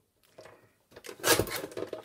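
Lever-arm paper guillotine blade slicing through a sheet of paper: a short, crisp cut about a second in, after a faint tap.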